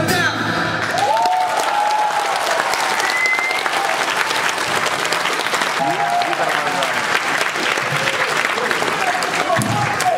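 Concert audience applauding in a theatre hall as a song ends, with a few shouts and one short whistle about three seconds in.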